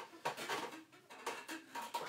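Plastic drink bottles being handled: a few light knocks and rustles as they are swapped in the hands and moved about the table.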